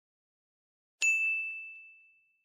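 A single bright ding, a bell-like chime sound effect from a subscribe-button animation, struck once about a second in and fading out as it rings.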